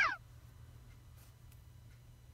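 A brief electronic chirp that sweeps up in pitch and straight back down at the very start, then only a faint low hum.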